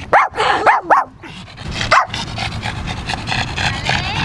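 Small Shih Tzu-type dog barking in high, yappy barks: three quick barks in the first second, then one more about two seconds in.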